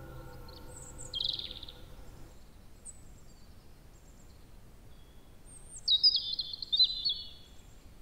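Birds chirping over a faint steady hiss: a short high chirp about a second in, then a louder, longer song phrase that drops in pitch near the end. Sustained ambient music tones fade out in the first two seconds.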